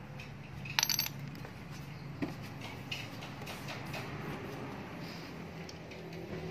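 Metal motorcycle engine parts clinking as they are handled during a teardown: one sharp clink with a short ring about a second in, then a few lighter taps and clicks.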